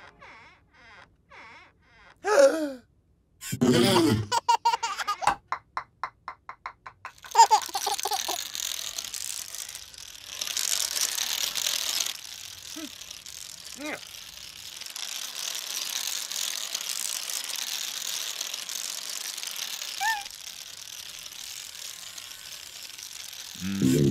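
Cartoon sound effects of a domino chain toppling: a run of sharp clicks that come faster and faster, then a long steady clatter of many dominoes falling. A baby giggles and squeals in the first few seconds.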